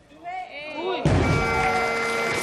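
Spectators shouting encouragement at a heavy clean and jerk. About a second in, a loaded steel barbell with rubber bumper plates crashes down onto the wooden lifting platform, and the crowd erupts in loud cheering as the winning lift is made.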